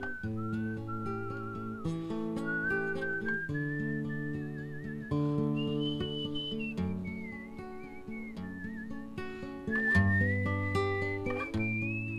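A man whistling the song's melody, with a slight waver on held notes, over his own acoustic guitar chords. It is an instrumental interlude between sung verses, and the tune climbs to its highest note about halfway through before stepping back down.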